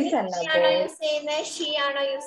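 Young children's voices giving a drawn-out, sing-song answer in chorus, their held notes gliding up and down, heard over a video call.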